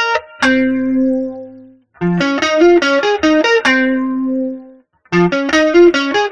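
Clean-toned semi-hollow electric guitar playing an atonal single-note line with hammer-ons at a slowed practice tempo: quick runs of notes, each ending on a held note that rings out, with two short pauses.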